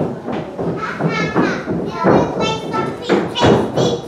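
Young children calling out and shrieking in high voices, with several thuds of feet on the stage.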